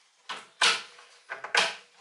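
Metal-framed mesh lid of a glass terrarium being set down on the tank and clipped into place. Two sharp clacks, a little after half a second and again about a second later, with smaller clicks between.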